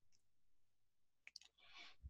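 Near silence, broken a little past halfway by a couple of faint, quick computer mouse clicks as a web link is clicked, followed by a soft hiss near the end.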